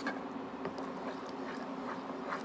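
Spatula stirring thick, wet chana dal halwa in a nonstick pan, making soft squelching and scraping with a few faint clicks. The sugar has just been added and is melting into syrup. A steady low hum runs underneath.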